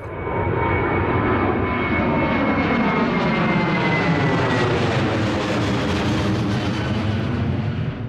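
Four-engine jet airliner passing low over the runway: the engines' loud roar, with a high whine that slowly falls in pitch.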